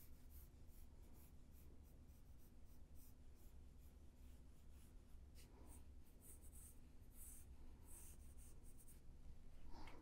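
Graphite pencil scratching on sketch paper in quick, light, repeated strokes, faint and busier in the second half. A steady low hum runs underneath.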